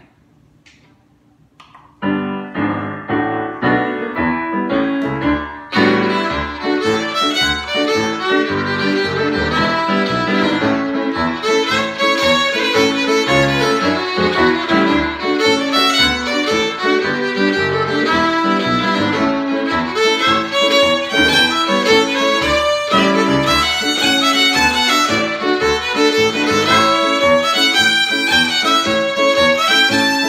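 Fiddle playing a lively old-time jig in quick, even notes, starting about two seconds in.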